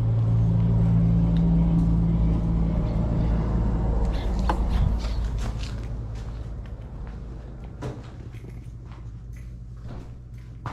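Steady low mechanical hum, loudest in the first few seconds and fading about halfway through, with a run of sharp clicks and knocks around the middle as a door is passed through.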